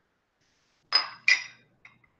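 Two light clinks of a glass water dropper against a whisky glass, about a second in and a third of a second apart, each with a brief high ring, and a faint tick near the end.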